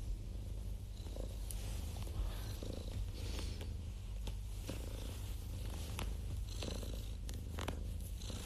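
Domestic cat purring close to the microphone: a steady low rumble, with a few faint rustles and clicks.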